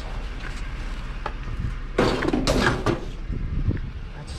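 Metal-framed junk being handled and loaded into a cargo van: a few light knocks, then a loud clatter and scrape about two seconds in that lasts about a second.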